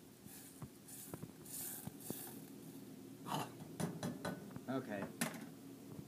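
A spoon stirring peas in a stainless steel saucepan: scraping against the pot with scattered light clinks and knocks, busiest in the second half.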